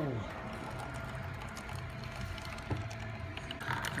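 Single-serve coffee machine running as it makes a cup: a low hum that pulses on and off, with a single click a little under three seconds in.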